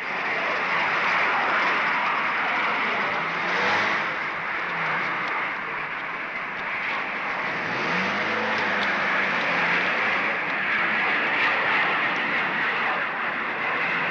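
Steady engine noise of a minibus and jet airliners at an airport. A motor note rises briefly about eight seconds in as the bus drives off.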